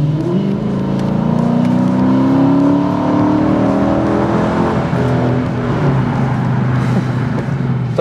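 Dodge Challenger's 5.7-litre Hemi V8 accelerating, heard from inside the cabin: the engine note climbs in pitch for about five seconds, then levels off and cruises.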